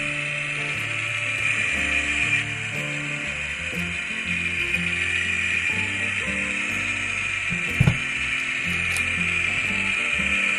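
N-scale model diesel locomotive's small motor and gears whirring steadily as it runs along the track, with low background music underneath. A single short thump about three-quarters of the way through.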